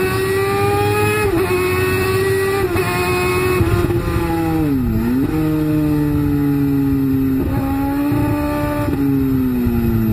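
Kawasaki ZX-10R's inline-four engine at high revs with rushing wind on the bike. The revs hold, sag about halfway through and jump sharply back up, then ease slowly downward near the end.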